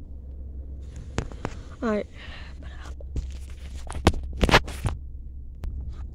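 Sharp clicks and knocks of someone climbing into a car and handling its door and fittings, the loudest cluster about four to five seconds in, over a steady low hum in the cabin.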